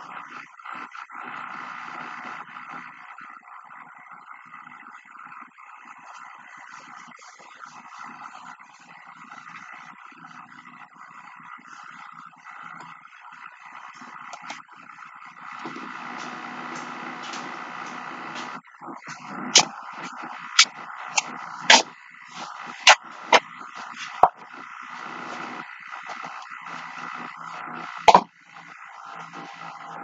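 Sharp clicks and knocks of objects being handled, about seven in quick succession two-thirds of the way through and one louder knock near the end, over a steady background hiss.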